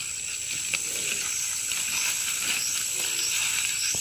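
Outdoor ambience with a steady high-pitched insect drone, plus faint rustling and a couple of soft snaps as leafy greens are cut and picked by hand.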